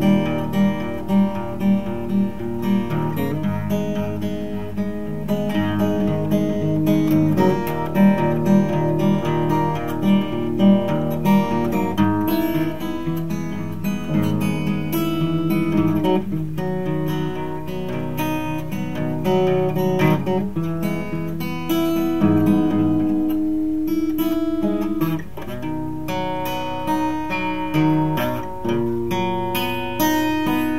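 Solo acoustic guitar playing an instrumental passage: a steady, evenly pulsed picked pattern for about the first twelve seconds, then chords that ring on longer.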